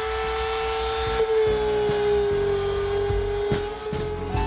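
Small corded rotary tool with a grinding-stone tip running at a steady high-pitched whine with a few light ticks, held against a Hypalon dinghy tube to rough up the rubber so patch glue will stick.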